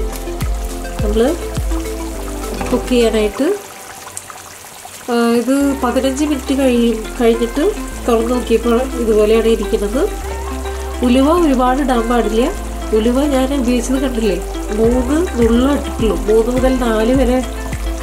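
Background music with a melody over a stepping bass line, which drops out for a moment about three and a half seconds in. Under it, a thick fish curry bubbles and sizzles in an uncovered pan as it reduces.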